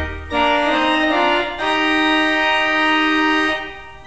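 Church organ playing sustained chords: a deep pedal note stops early on, the chords change twice, and a long chord is held before the music drops to a softer, thinner registration near the end.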